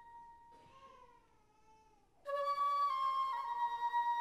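Flute music: a faint note slides down in pitch, then about two seconds in a louder flute enters and steps down through a few held notes.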